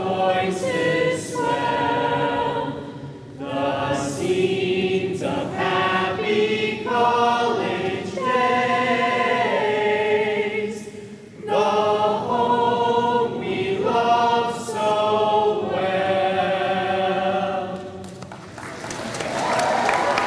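A large crowd sings a college alma mater together with a small group of singers, in long held phrases with short breaks for breath. The song ends near the end, and applause starts.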